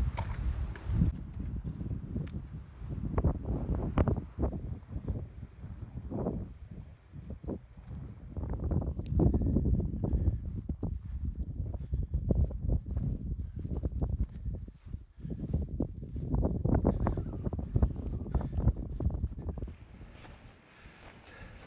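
Footsteps of a person walking over heather and rough rocky ground: irregular thuds and scuffs, pausing briefly twice, with wind rumbling on the microphone.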